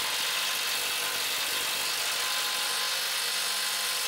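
Compact cordless power tool spinning a socket on a long extension, running with a steady, even whir while working the transmission crossmember bolts.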